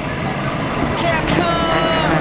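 Twin Evinrude 250 hp outboard motors running as the boat accelerates, their pitch rising over the second half.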